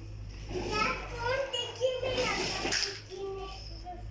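Young children's voices chattering and calling out as they play, with a sharp knock just before two seconds in.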